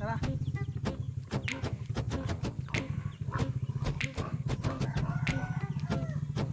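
Footsteps in rubber flip-flops slapping and clicking irregularly on dirt and wooden planks, over a steady low rumble on the microphone.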